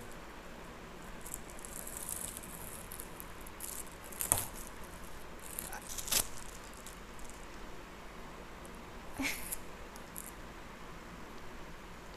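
Faint rustling and crinkling as the wrapping is picked and peeled off a long pencil. A few sharp clicks about four and six seconds in, and a smaller one about nine seconds in.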